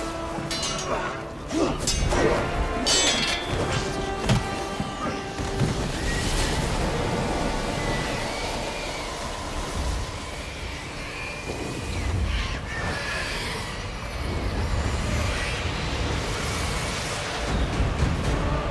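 Dramatic TV score with deep booms and low rumbling, and several sharp hits in the first few seconds.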